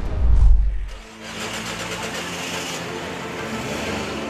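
A deep rumble for about the first second, cutting off sharply, then steady street noise with a car engine running.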